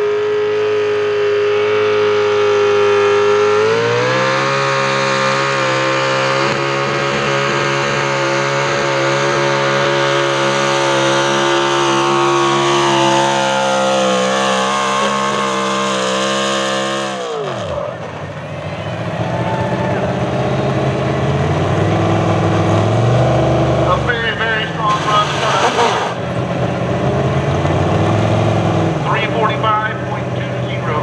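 A 485-cubic-inch Chevrolet V8 in a Pro Stock 4x4 pulling truck, held at high revs, then run at full throttle with the revs climbing slightly as the pull starts just before 4 s. It stays wide open for about 13 seconds. At about 17 s the revs drop suddenly as the throttle is shut at the end of the pull, and the engine then runs at lower, unsteady revs.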